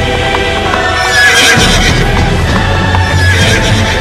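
Music with horse sound effects laid over it: galloping hoofbeats and two horse whinnies, one a little after a second in and one near the end.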